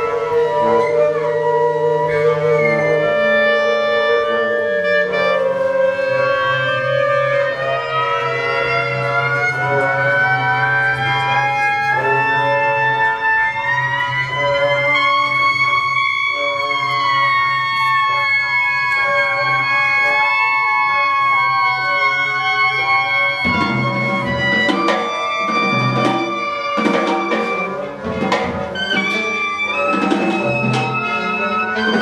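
Live free-jazz large ensemble of clarinets, saxophones and brass, with double bass and drums, playing: two clarinets lead over long held horn notes. One line climbs slowly through the middle and then falls back, and the drums come in with hits about two-thirds of the way through.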